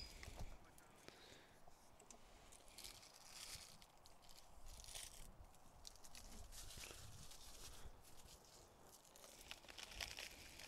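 Near silence: faint outdoor ambience with a few soft rustles.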